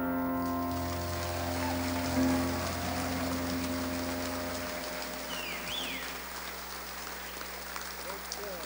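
The closing chord of a piano, bass and drums band rings on and dies away over the first few seconds, as audience applause rises and carries on.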